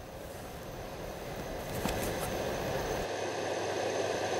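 Steady outdoor background noise from a field reporter's open live microphone, a mix of low rumble and hiss that grows slightly louder; the low rumble drops out about three seconds in.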